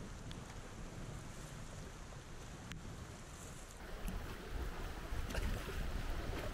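Whitewater rapids rushing around an inflatable raft, with wind rumbling on the camera microphone; the water noise grows louder about four seconds in.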